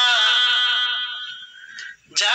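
Background song: a singer holds one long, slightly wavering note that fades out about a second and a half in.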